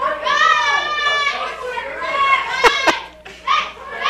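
Several voices, a child's high voice among them, calling out drawn-out directions to a blindfolded person being guided on foot. Two sharp clicks come close together just under three seconds in.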